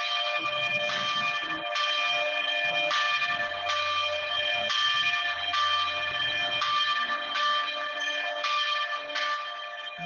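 Bells ringing, struck again about once a second, their steady tones overlapping, with a low hum underneath in the second half.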